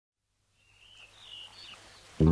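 Faint outdoor ambience fading in from silence, with a few short high chirps of birdsong over a low hum.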